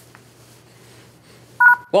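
Quiet room tone with a low steady hum, then about one and a half seconds in a short, loud electronic beep of two pitches sounding together.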